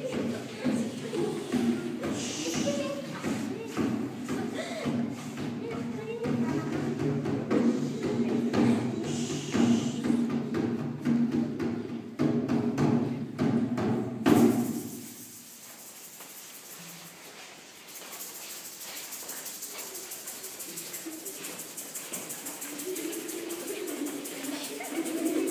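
A dance song sung by a group of voices, with many sharp claps or footfalls through it. The singing stops abruptly about fourteen seconds in and the room goes much quieter.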